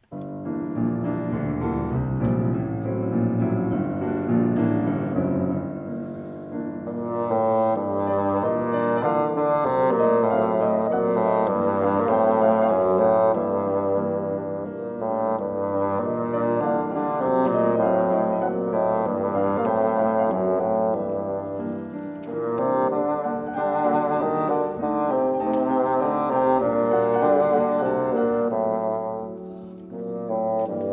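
Bassoon playing a classical arietta melody over piano accompaniment, swelling and falling back in loudness from phrase to phrase, with a short lull near the end before the next phrase.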